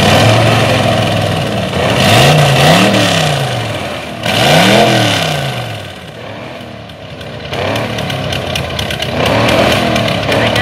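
Rat rod engine revved in repeated blips, its pitch rising and falling, with loud rushes of exhaust noise at the peaks; it is being revved to throw exhaust flames. Dense crackling and popping comes in near the end.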